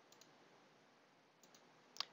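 Near silence with a few faint computer mouse clicks, a pair near the start and more near the end.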